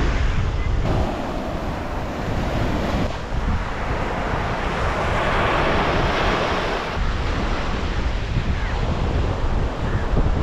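Sea surf breaking and washing up a sandy beach, with wind buffeting the microphone. The hiss of the wash swells through the middle, and the sound changes abruptly about one, three and seven seconds in.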